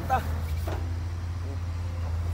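Heavy vehicle's diesel engine idling, a steady low drone.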